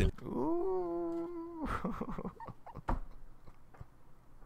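A man's drawn-out vocal exclamation, rising at first and then held steady for about a second and a half, like an impressed "ooh". It is followed by a few short bursts of laughter that fade out.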